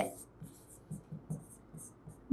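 Stylus tip on an interactive whiteboard's screen, writing a word by hand: a series of short, faint scratches and light taps.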